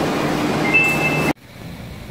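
Osaka Metro subway train standing at the platform: a steady rumble and hiss of train and station noise, with a short high two-note beep shortly before it stops abruptly, leaving quiet station room tone.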